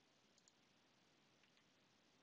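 Near silence: room tone, with at most a couple of very faint clicks.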